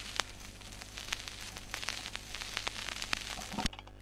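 Surface noise of a 45 rpm vinyl record with no music playing: scattered crackles and pops over a low steady hum, with a few louder clicks near the end.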